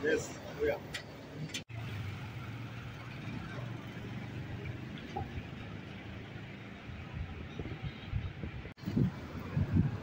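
Street ambience: a steady hum of road traffic, with brief indistinct voices in the first second and again near the end, and two short dropouts in the sound at edit cuts.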